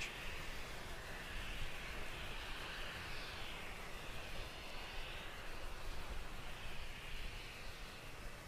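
Steady, distant roar of a Falcon 9 first stage's nine Merlin engines as the rocket climbs away.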